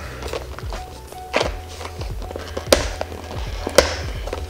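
Background music, with three sharp taps about a second apart as fingers work at a tight-fitting cardboard box to get it open.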